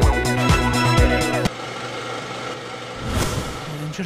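Upbeat disco-style background music with a steady beat, cutting off abruptly about one and a half seconds in. A steady noisy background follows, with a brief swell about three seconds in.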